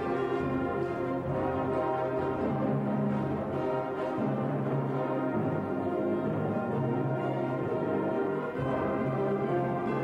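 Middle school concert band playing a slow piece, woodwinds and brass sustaining full chords that change every second or so.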